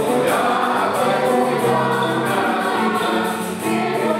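Mixed choir of women's and men's voices singing together in sustained phrases, with a brief break between phrases near the end.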